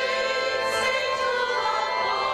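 Choir singing a hymn, the voices holding long, steady notes.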